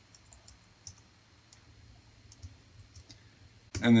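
Faint, scattered key clicks from a computer keyboard as a line of code is typed, uneven in spacing.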